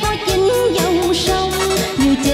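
Instrumental interlude of a tân cổ song played on a Yamaha electronic keyboard: a lead melody that bends and wavers in pitch, over a steady bass-and-drum beat.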